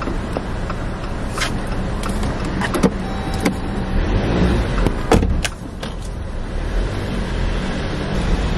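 Car engine idling with a steady low rumble while a parking-garage ticket machine is worked through the open window: a few sharp clicks, and a short beep about three seconds in.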